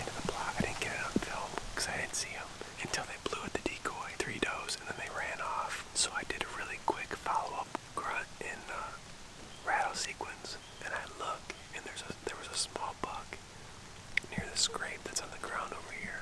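A man whispering close to the microphone, in short phrases with brief pauses.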